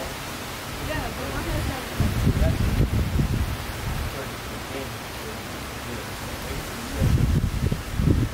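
Wind buffeting an outdoor microphone over a steady hiss, with deep rumbling gusts about two seconds in and again near the end.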